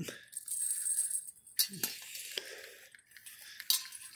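Light metallic clinks and rattles from the wire bail and iron hook of a cast iron Dutch oven as the pot is lifted and carried, with a few sharp clicks along the way.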